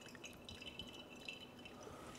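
Faint thin stream of water from a gooseneck kettle falling onto a paper filter in a pour-over coffee dripper, with light dripping.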